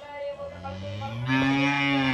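A cow mooing: one long, low call that begins about half a second in and grows louder in the second half.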